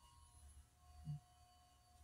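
Near silence: faint room tone with a thin steady whine, and one brief low sound about a second in.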